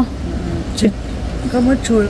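A woman speaking briefly, with a steady low rumble of background noise underneath throughout.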